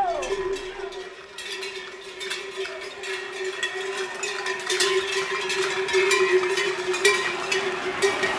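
Cowbells on the steers running with the bulls ring steadily as the herd runs down the street, over many sharp clicks and clatters.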